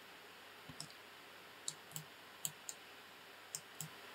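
Faint computer mouse clicks, several short isolated clicks at irregular intervals.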